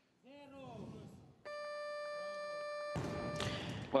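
A shout, then about a second and a half in the electronic down-signal buzzer of the weightlifting platform sounds: one steady tone held for about two seconds, telling the lifter that a successful snatch is complete and the bar may be lowered. Near the end the crowd breaks into loud cheering and applause.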